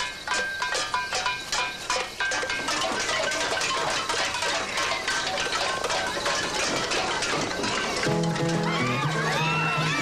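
Metal pots being banged by a crowd, a ringing clatter of about three strikes a second at first that thickens into a dense, continuous clanging. Background music with a bass line comes in about eight seconds in.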